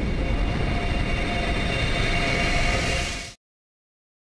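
A steady low mechanical rumble with a few faint steady whining tones above it, like passing rail or heavy traffic noise, that cuts off abruptly about three and a half seconds in.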